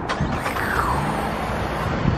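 Road traffic: a steady rush of passing vehicles with a low engine hum, and a falling whine about half a second in as one goes by.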